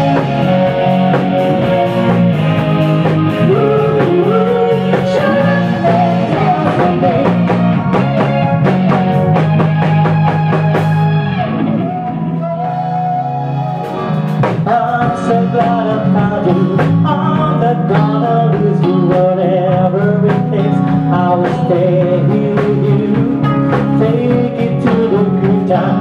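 Live cover band playing pop-rock: drum kit, electric guitar, bass guitar and keyboard, with singing over it. The band thins out briefly about twelve seconds in, then comes back in full.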